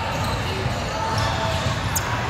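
Basketball being dribbled on a hardwood court amid a steady hum of voices from players and spectators, echoing in a large gym, with a few short high squeaks near the end.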